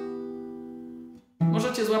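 Acoustic guitar ringing out a fingerpicked A minor chord, fading steadily, then cut off abruptly just past a second in. A man's voice starts in near the end.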